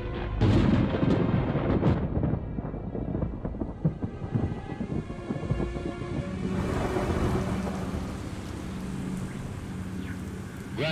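Thunder rumbling, with three sharp cracks in the first two seconds, then a steady hiss of storm wind and rain that swells in about six and a half seconds in.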